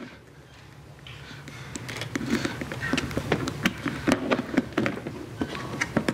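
Small metal clicks and rattles of a padlock being unlocked and taken off a box, beginning about two seconds in and continuing in irregular bursts, with faint voices in the background.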